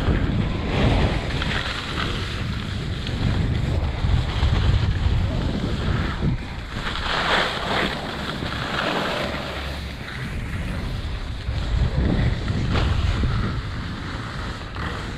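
Wind buffeting the microphone of a camera carried down a ski run, over the hiss of edges scraping across the snow. The scraping swells about halfway through and again near the end.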